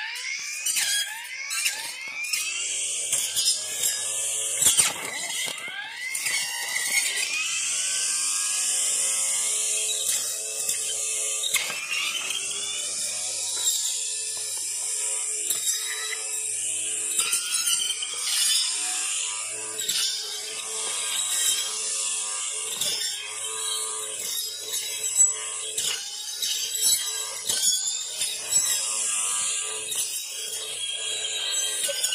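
Makita cordless trimmer fitted with a 36-tooth carbide-tipped saw blade, its motor whining at high speed as the blade cuts through thick ragweed stalks. The pitch sags and recovers each time the blade bites, with sharp cracks of stems being cut.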